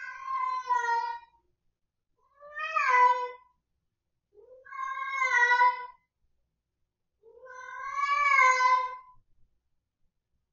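A ragdoll cat crying with four long, drawn-out meows about a second apart, each wavering in pitch. This is the distressed night-time crying of a cat unsettled by a move to a new home.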